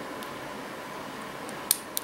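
Steady faint hiss, then two short sharp metallic clicks near the end as the last pin sets and the plug of the UAP six-pin euro profile cylinder turns open under the tension wrench and hook pick.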